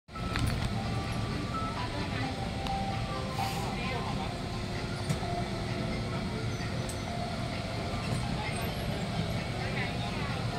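Outdoor amusement park ambience: indistinct voices and faint background music over a steady low rumble.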